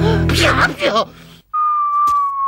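Whistling: a wavering, warbling whistle over the end of the background music, then a brief gap and one long, steady, clear whistled note starting about three-quarters of the way in.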